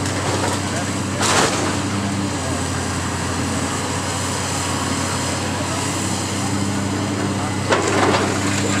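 Long-reach demolition excavator's diesel engine running steadily under load as its jaw works the top of a brick building, with a sharp crash of breaking masonry about a second in and another near the end.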